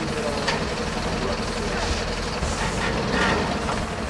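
A vehicle engine idling with a steady low rumble, under scattered voices talking in the background.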